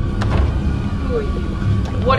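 A loud, steady low rumbling drone, with a few short clicks and a brief vocal sound about a second in.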